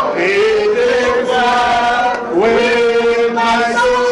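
A group of voices singing a victory chorus in the manner of a chant, in long held notes that slide up into the next note about two seconds in.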